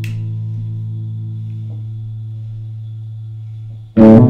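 Electric guitar chord on a Gibson Les Paul, capoed at the fifth fret, left to ring and slowly fading, with a gentle pulsing wobble in one of its notes. It is damped just before the end, and a loud new run of picked notes starts right at the end.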